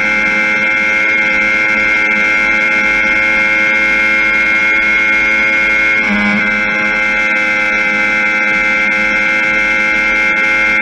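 Yamaha R1's crossplane inline-four engine running at sustained high revs in sixth gear at high speed, a steady high-pitched drone that wavers briefly about six seconds in.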